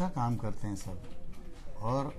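A man's voice in short, hesitant bits of speech or low humming sounds, with a pause between them.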